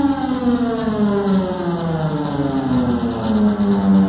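Live rock music in which a synthesizer tone slides slowly down in pitch, then levels out and holds near the end.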